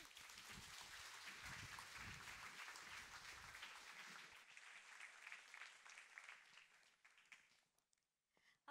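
Faint audience applause of many hands clapping, thinning out over the last few seconds and dying away just before the end.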